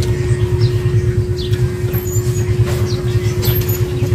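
A motor running steadily, a low hum with a constant tone held throughout, with a few faint crunches of green mango being chewed on top.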